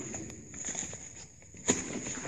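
Footsteps and scuffing on loose rock and gravel, with a sharp knock about three-quarters of the way through, over a thin steady high whine.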